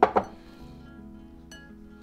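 Quiet background music, with a brief clink of kitchenware at the very start and a light click about a second and a half in.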